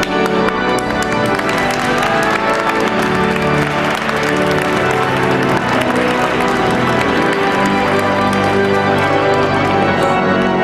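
Organ music in sustained chords, with guests applauding: a dense patter of hand claps throughout.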